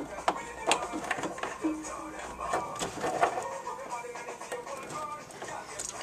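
RCA phono plugs being pushed into the jacks on the back of a TV, with several sharp clicks and rattles of the plugs and cables in the first few seconds.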